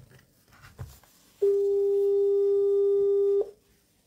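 Ringing tone of an outgoing phone call through a smartphone's speaker: one steady low tone lasting about two seconds, starting about a second and a half in.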